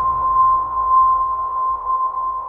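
A steady single-pitched tone held without change over a faint low rumble: a suspense sound effect in a horror film's trailer soundtrack.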